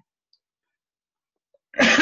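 Near silence, then near the end a man coughs once, a short sharp burst.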